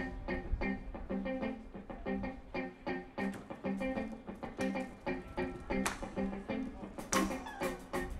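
Live funk band playing an instrumental groove: a repeating guitar and bass riff over drums, with the cymbal hits getting stronger near the end.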